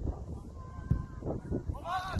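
Shouted calls from voices across a football pitch, with a loud drawn-out shout near the end.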